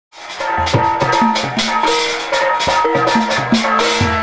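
Kuda renggong accompaniment music: a pitched melody of held notes over drums and percussion keeping a steady, driving beat.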